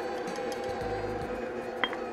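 Stand mixer motor running with a steady hum as the pie batter mixes in its stainless steel bowl, and a single clink near the end as the measuring spoon touches the bowl.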